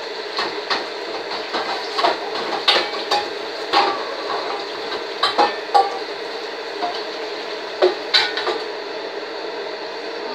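Dishes and cutlery being handled in a kitchen: a dozen or so irregular sharp clinks and knocks, over a steady background hum.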